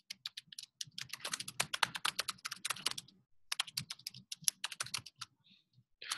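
Rapid typing on a computer keyboard, in two quick runs of keystrokes with a short pause a little after the halfway point.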